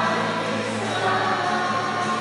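Church choir singing a hymn with sustained, steady chords, as at the close of a Mass.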